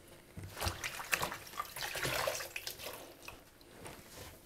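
Wet snowball viburnum flower heads being lifted out of a stainless steel sink and put into a plastic colander, with water dripping and splashing in uneven bursts and small knocks.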